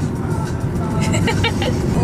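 Road and engine noise inside a moving 2009 Kia Rondo's cabin: a steady low rumble, with faint music from the car stereo underneath.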